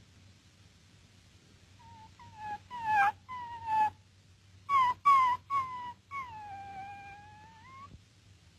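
A dog whimpering: a run of short high whines, each falling in pitch, starting about two seconds in, then one long drawn-out whine near the end that sags and turns upward as it stops.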